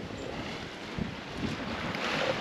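Wind on the microphone over the rush of sea water along a Leopard 45 catamaran's hull as she sails.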